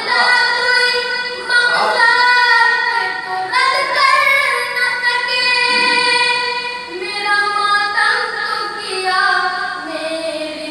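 A boy singing solo into a microphone without accompaniment, in a high voice that draws out long held notes and shifts pitch every second or two.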